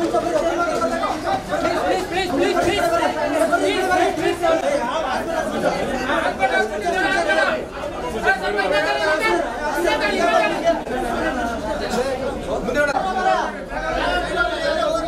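Dense crowd chatter: many voices talking and calling over one another at close range, continuously.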